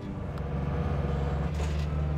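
An engine running steadily with a low hum.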